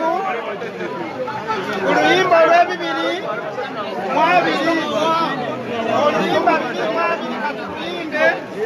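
Several people talking at once, with overlapping voices and chatter throughout.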